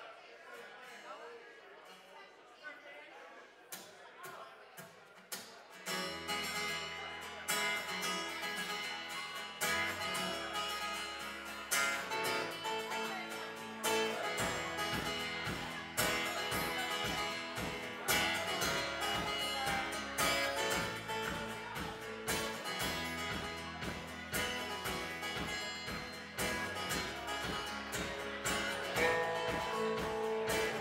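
Live rock band starting a song: after a few quiet seconds, acoustic guitar and low bass notes come in about six seconds in, and drums join with a steady beat at around fourteen seconds.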